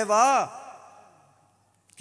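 A man speaking into a microphone: one drawn-out word that falls in pitch, then its echo fades into a short pause.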